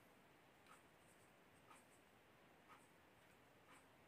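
Near silence: faint room tone with a soft tick about once a second, evenly spaced.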